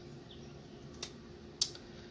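Two short, sharp clicks about half a second apart as lettuce leaves are cut up for a lizard, over a faint steady hum.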